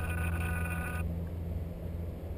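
Steady low rumble of wind buffeting the camera's microphone, with a steady high-pitched whine over it that cuts off suddenly about a second in.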